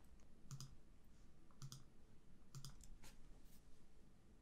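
Faint clicks of a computer mouse, about five over a few seconds, some in quick pairs.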